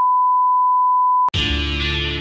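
Steady 1 kHz test tone of the kind played with television colour bars. It cuts off abruptly with a click about a second and a quarter in, and music starts at once.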